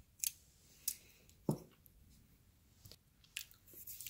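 Faint, scattered light clicks and a soft knock from small die-cast metal toy cars being handled and set down on a cloth-covered table.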